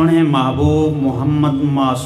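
A man's voice, amplified through a microphone, chanting in long, held melodic phrases, as in sung religious recitation. It starts suddenly at the very beginning.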